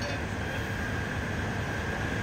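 Steady engine drone at a fire scene, running evenly with a thin steady high whine over it, with no distinct knocks or voices. It fits fire apparatus engines running while a hoseline is in operation.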